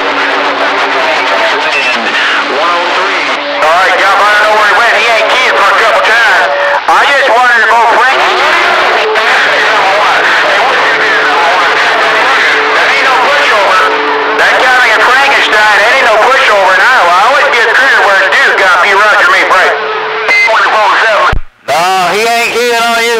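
CB radio receiving several distant stations talking over one another, garbled through the set's speaker, with steady tones running under the voices. The signal cuts out briefly just before the end.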